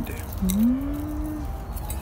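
A man's drawn-out closed-mouth hum ("mm") of acknowledgement, about a second long, rising in pitch and then held level.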